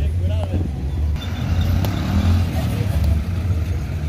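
Street ambience in a busy town centre: indistinct voices of passers-by and vendors over a steady low rumble.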